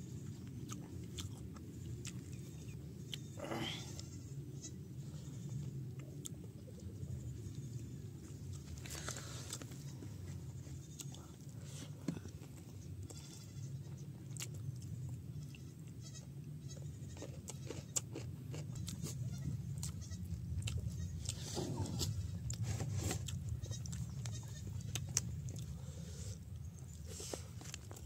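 Close-miked eating by hand: wet chewing, lip smacks and short clicks of fingers working rice and curry, over a steady low rumble.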